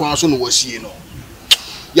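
A man speaking briefly in a lively voice, then a single sharp click about a second and a half in.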